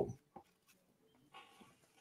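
A quiet pause in a man's talk: the end of a spoken word, then a faint click and a soft breath-like hiss about halfway through.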